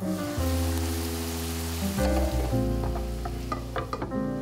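Cabbage pie frying in a pan, sizzling as the glass lid is lifted off. The sizzle eases after about two seconds, and a few light knocks come near the end, under background music.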